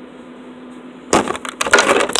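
A low steady hum, then about a second in a loud burst of scraping, rattling handling noise lasting about a second as the recording phone is grabbed and moved.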